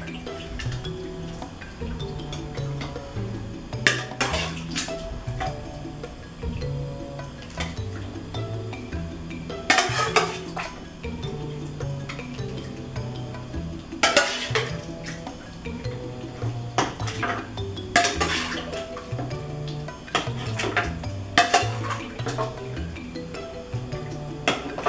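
A spoon clinking and scraping against an aluminium pressure cooker and a food processor bowl as cooked chicken feet are transferred, in sharp irregular clinks every few seconds. Background music plays steadily underneath.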